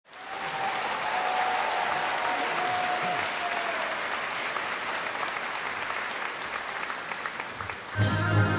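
A theatre audience applauding, a dense steady clatter of many hands clapping that eases slightly near the end.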